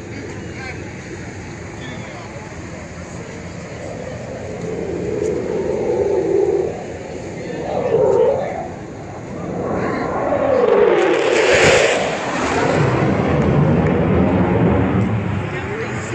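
USAF Thunderbirds F-16 Fighting Falcon jet flying low past, its engine noise building over several seconds and loudest about eleven seconds in as it passes closest. A lower rumble trails on for a few seconds after.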